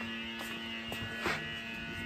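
Electric-over-hydraulic trailer brake actuator's pump motor buzzing steadily while it holds the brakes applied during a brake test, with a brief scuff about halfway through.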